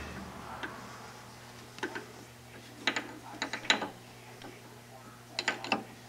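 A Jacobs Rubber-Flex collet chuck on a lathe spindle turned by hand, giving short bursts of metallic clicking in three clusters: a couple of clicks about two seconds in, a quick run of clicks about three seconds in, and a few more near the end.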